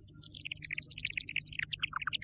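A rapid string of short, high-pitched chirping notes, several a second, falling in pitch in repeated runs.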